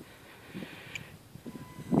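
Quiet outdoor background with faint wind rumble and a brief click about halfway through. Near the end a faint steady electric whine comes in as the RC helicopter's motor begins its soft-start spool-up.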